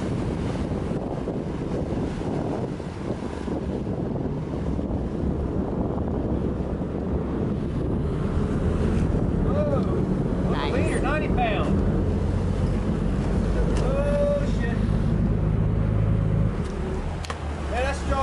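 Sportfishing boat's inboard engines running with water rushing in the wake and wind on the microphone; the engine hum grows louder about eight seconds in. A few short shouts come near the middle.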